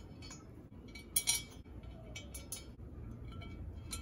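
Small metal screws clinking faintly as they are set by hand into the holes of a metal desk-frame foot, a few light clicks with the brightest clink a little over a second in.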